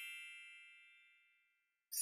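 A chime ringing with many bright tones and fading away over about a second and a half, then a shimmering run of wind chimes starting near the end.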